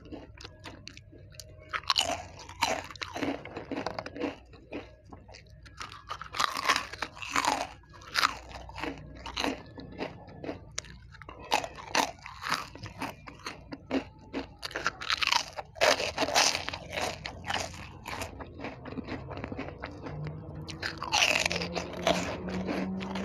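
Crispy snacks being bitten and chewed: clusters of loud crunches every few seconds, with quieter chewing in between.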